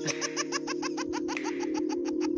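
A baby laughing in a fast, even run of short laughs, about eight a second, over steady background music.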